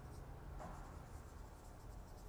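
Faint rubbing and scratching of a felt-tip marker writing on a whiteboard.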